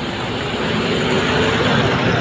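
A truck driving past, its engine and road noise growing steadily louder to a peak near the end.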